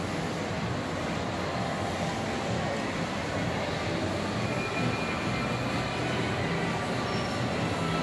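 Steady low rumble of a large shopping-mall interior, an even background hum with no distinct events.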